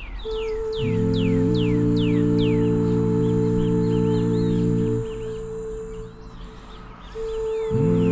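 Ambient background music of sustained chords and a steady high tone, over a regular run of quick falling chirps. The chords come in about a second in, drop away for a couple of seconds near the end, then return.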